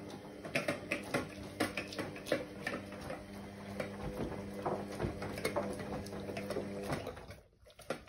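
XL bully dog eating from a metal bowl on a raised stand: a run of irregular clicks, clinks and smacks as its teeth and tongue work the food against the bowl. A steady hum sounds underneath and cuts off about seven seconds in.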